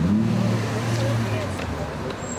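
A car engine hums steadily for about a second and a half, then fades, over background voices.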